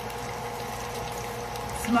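Diced potatoes frying in oil in a skillet, the oil sizzling steadily on low heat.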